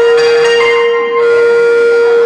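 A loud, steady single tone held unchanged through the stage sound system, with fainter higher tones above it.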